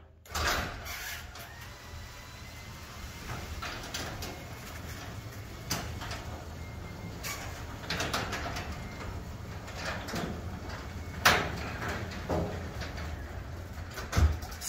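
Legacy 850 belt-drive garage door opener raising a Northwest Door 502 sectional door, running quietly with a steady low hum. Scattered clicks come from the door sections and rollers moving up the tracks, the sharpest about 11 seconds in.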